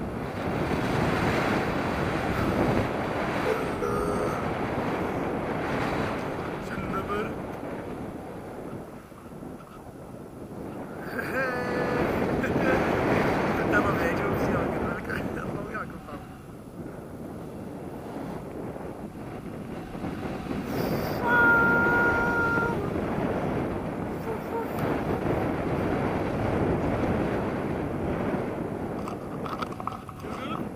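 Wind rushing over the microphone of a camera in paragliding flight, rising and falling in long waves, with a few short steady tones over it.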